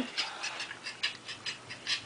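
Quick, quiet breathy puffs, about six a second, like panting or stifled laughter.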